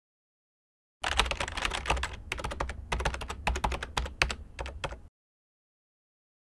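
Computer keyboard typing: a quick, irregular run of key clicks that starts about a second in and stops after about four seconds.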